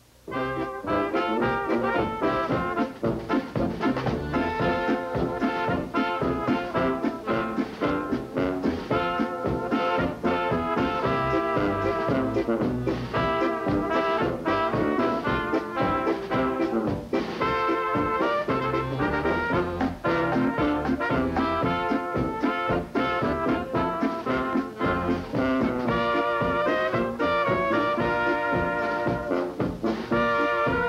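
A brass polka band playing a polka: trumpets carry the tune over a sousaphone bass, drum kit and accordion, with a steady beat. The band strikes up right at the start.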